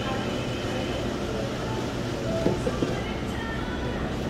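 Steady low rumble of shop-floor background noise with faint background music. A few light clicks and knocks come about two and a half seconds in.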